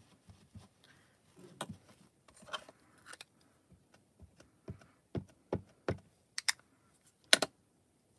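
Small plastic ink pad tapped repeatedly against a clear rubber stamp mounted on an acrylic block to ink it, giving a run of sharp plastic clicks and taps. The taps come about two a second in the second half, the loudest near the end, after a few seconds of soft handling rustles.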